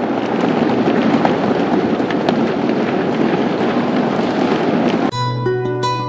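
Audience applauding, a dense clatter of clapping. About five seconds in it cuts off abruptly into acoustic guitar music with sustained plucked notes.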